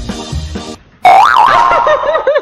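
Music breaks off, and about a second in a loud, springy 'boing' starts, its pitch swinging up and down several times and then wobbling in quick arcs.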